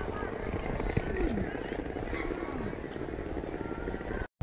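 Outdoor street ambience: scattered voices of passers-by over a steady low rumble, with one sharp click about a second in.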